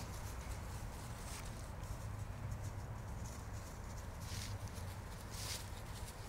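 Dogs' paws running and scuffing through dry fallen leaves, a few short rustles over a steady low rumble.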